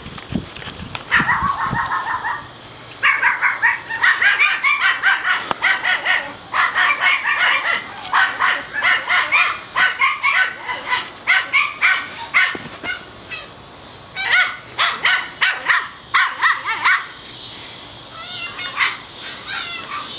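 Seven-week-old toy schnauzer puppies yapping in play, in quick runs of high-pitched barks with short pauses between runs; the barking stops a few seconds before the end.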